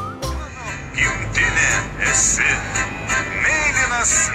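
A recorded song played from a smartphone: a male voice singing over backing music, starting about a second in.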